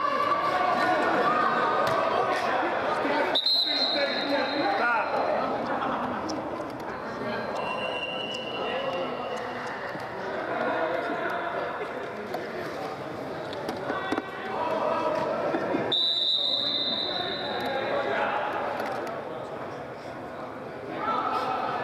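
Indistinct voices of players and onlookers echoing in a large indoor hall, with a referee's whistle blown twice, once about three and a half seconds in and again about sixteen seconds in, each about a second long.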